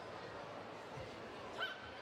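Faint steady background noise of a competition hall, with a soft thump about a second in and a brief faint high call near the end.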